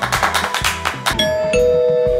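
A short music sting with quick percussive beats, ending in a two-note ding-dong chime that falls in pitch: a notification-bell sound effect.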